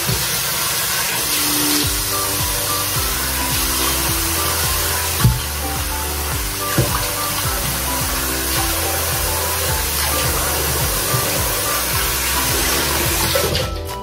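Water running from a tap into a sink while a face is washed and rinsed, a steady hiss with a few splashes. It stops shortly before the end. Background music plays over it.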